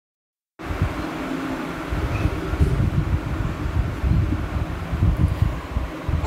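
Steady background room noise with an uneven low rumble, starting about half a second in, under a still title slide before the lecture begins.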